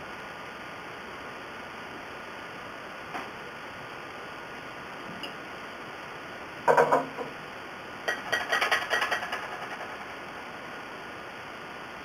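A vinegar bottle set down on a hard tabletop with one ringing knock about seven seconds in, then about two seconds of fast clinking that fades, as a spoon and spatula begin stirring the cold starch mixture in a small pot. Otherwise only a steady low room hiss.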